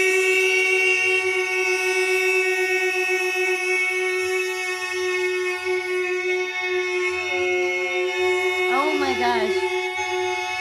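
Several voices each hold the 'boy' of a 'yeah boy' shout as one long sustained note, in a contest to see who can hold it longest. Near the end one voice wavers up and down in pitch.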